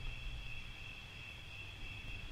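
Crickets trilling steadily, a continuous high-pitched tone, over a faint low hum.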